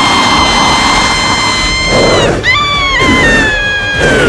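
A woman's long, high-pitched scream, held on one pitch for about two seconds, then breaking and sliding downward.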